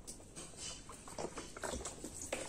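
Wet bath sponge being squeezed and rubbed between hands: faint, short, irregular squelches and splashes, most of them in the second half.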